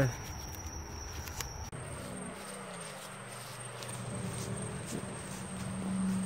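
Night insects trilling in one steady high-pitched note; about two seconds in the note gives way to another, higher one.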